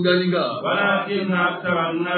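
Sufi dhikr chanting: voices repeating one short devotional phrase over and over without a break.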